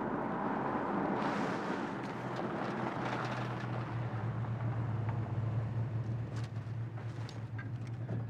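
A car drives up and pulls to a stop, its engine then idling with a steady low hum. A few light knocks come near the end.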